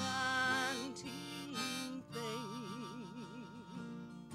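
Harmonica playing an instrumental break over acoustic guitar accompaniment, with held notes and a wavering, warbling note in the second half.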